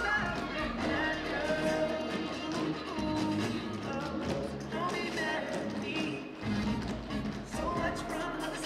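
A song with a singing voice plays over a group of tap dancers whose tap shoes strike the stage floor in quick rhythmic taps.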